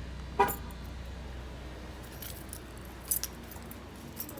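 A short, sharp pitched chirp about half a second in as the car is locked at the door handle, then a bunch of car keys jangling in the hand in light rattles.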